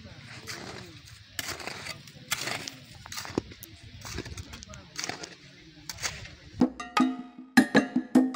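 Irregular scrapes and knocks of a long-handled digging tool working loose, dry soil and stones. Near the end a short pitched sound with steady tones comes in over it.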